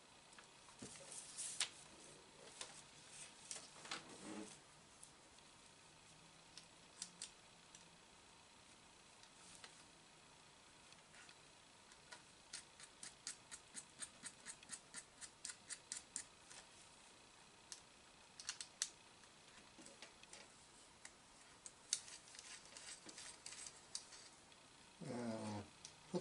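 Faint small clicks and taps from hands working screws and nuts into a model airplane fuselage. About halfway through there is a quick run of evenly spaced clicks.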